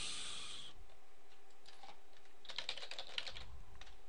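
Computer keyboard typing: a quick run of keystrokes about two and a half seconds in, entering a short word. A brief hiss sounds at the very start.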